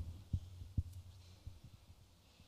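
A few low thumps of a handheld microphone being handled, over a steady low hum.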